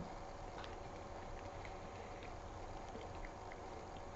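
Faint chewing of a mouthful of burger, with a few soft wet mouth clicks over a steady low room hum.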